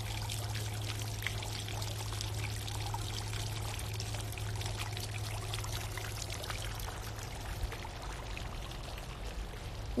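Steady running, splashing water, as from a small garden fountain, with a low steady hum underneath.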